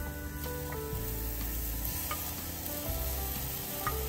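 Damp, freshly rinsed quinoa grains sliding and pattering into a metal saucepan as a wooden spoon scrapes them out of a glass dish, a steady hiss of falling grains.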